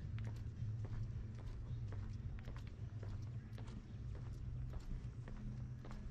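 Footsteps on wooden boardwalk planks, sharp strikes about twice a second, over a steady low hum.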